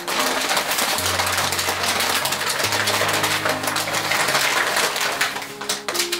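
Stiff kraft paper crinkling and rustling in dense, crackly bursts as it is folded and wrapped around a bundle of tulip stems, over soft background music with a few held low notes.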